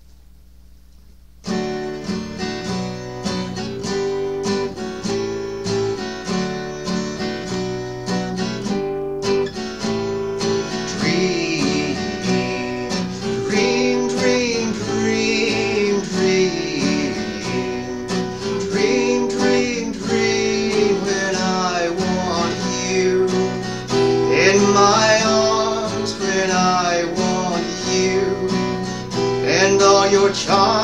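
Acoustic guitar playing, strummed and picked, starting about a second and a half in after a near-quiet moment. About ten seconds in, a second wavering melody line joins over the guitar.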